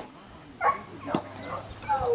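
A beagle giving two short barks, then starting a long drawn-out bay near the end.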